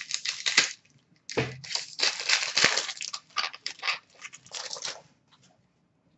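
Upper Deck hockey card pack wrapper torn open and crumpled by hand: crackly rustling in irregular runs, with a short pause about a second in, stopping about five seconds in.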